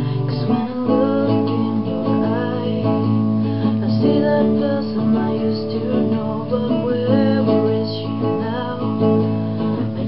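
Acoustic guitar music: strummed chords with a melody line over them, in an instrumental passage of a song.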